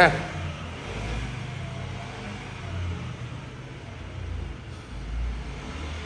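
Low rumble of street traffic, swelling and fading a few times, with a faint steady hum underneath.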